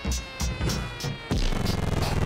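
Trap beat playing back from FL Studio: hard kick, 808 bass, hi-hats and claps, with a high tone sliding slowly down in pitch as a tape-stop effect winds the beat down.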